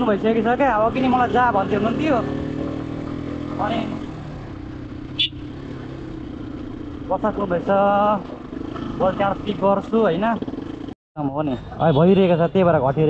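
Motorcycle engine running steadily under way, with a voice talking over it in bursts; the sound cuts out abruptly for a moment near the end.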